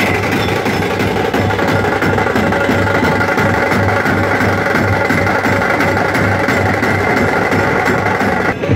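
A street drum band of large bass drums and handheld metal drums playing a fast, steady beat, with a sustained higher tone running over it.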